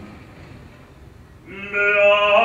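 Male opera singer: a sung phrase dies away, and after a quieter gap of about a second he comes back in, about one and a half seconds in, on a loud held note.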